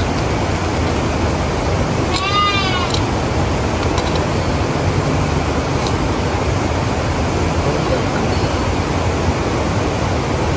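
A single sheep bleat, one short arched call about two seconds in, over a steady rushing noise.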